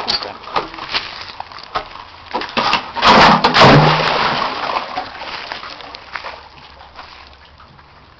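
A loud splash about three seconds in as a stick or other object goes into the water of a concrete drainage pit, followed by sloshing that fades over the next couple of seconds. Light clicks and rustles come before it.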